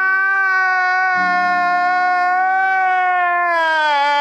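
A man wailing in one long, unbroken crying howl that holds its pitch and then sags lower near the end.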